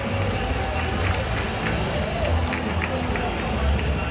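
Ballpark public-address music with a thumping bass, mixed with crowd chatter and noise in the stands.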